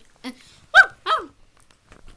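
A child imitating a dog: two short woofs about a third of a second apart, each falling in pitch, the first louder.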